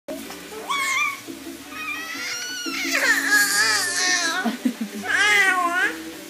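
Four-month-old baby squealing and cooing happily in a high, wavering voice: a short call about a second in, a long drawn-out squeal from about two seconds to past four, and another squeal near the end.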